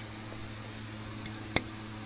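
A steady low hum under faint hiss, with one sharp click about a second and a half in.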